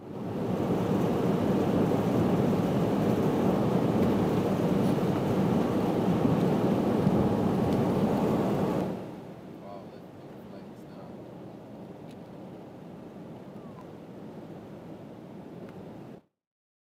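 Steady rushing wind and road noise of a moving car. It is loud for about the first nine seconds, then drops suddenly to a lower, still steady level.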